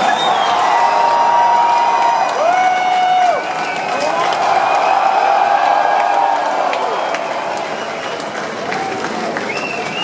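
Concert audience cheering and applauding, with individual drawn-out shouts and whoops rising above the crowd noise.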